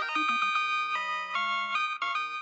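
A short music jingle: a melody of held, pitched notes that step up and down every fraction of a second.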